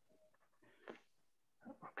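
Near silence, broken by a few faint, brief sounds: one about a second in and two close together near the end.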